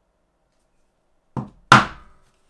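Brass-headed mallet striking a hand-held metal leatherworking tool set upright on leather over a hard block: a light tap, then a much harder blow about a third of a second later, with a short ring after it.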